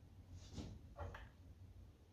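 Near silence: room tone, with two faint, short sounds about half a second apart.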